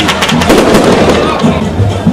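A rapid string of firecracker pops crackling over crowd noise, thickest in the first second.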